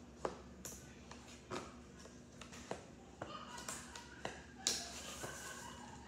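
Oversized Pokémon cards being handled: irregular light taps and rustles of stiff card, the sharpest a little over two-thirds of the way through.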